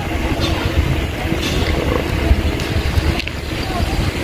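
Wind buffeting the phone's microphone as it moves along the road: a low, uneven rumble.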